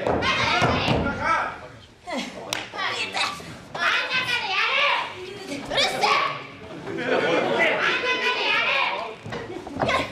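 Women shouting and crying out during a pro wrestling bout, broken by several sharp thuds of impacts in the ring.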